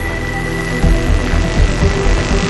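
Background music over the steady rushing noise of the Concept Ice Vehicle's supercharged BMW engine and propeller as it drives across snow.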